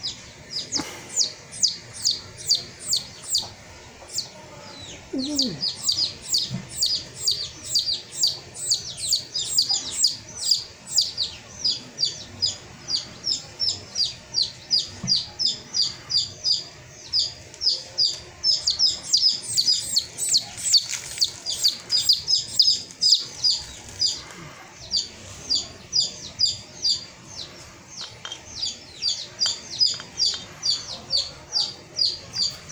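A bird chirping over and over, short high chirps that drop in pitch, about three a second, with a few brief pauses.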